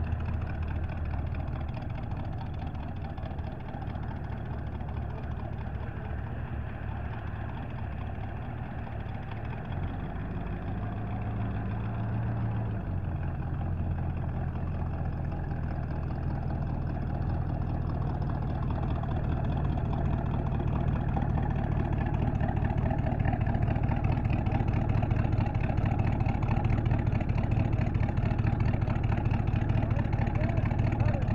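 Hot rod's engine running with a low, steady rumble that grows louder as the car approaches, with a brief rev about a third of the way in.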